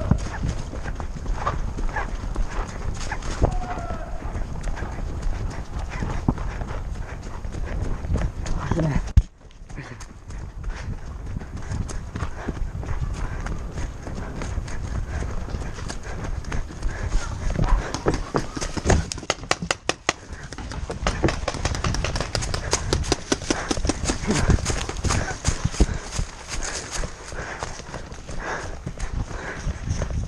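Running footsteps on dirt and dry leaves, with the gear and camera jolting at each stride, and paintball markers firing sharp pops, including a quick string of evenly spaced shots a little past the middle.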